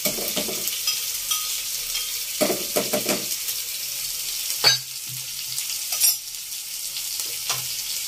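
Food frying in hot oil in a pan, a steady sizzle, with a utensil stirring and knocking sharply against the pan a couple of times about midway.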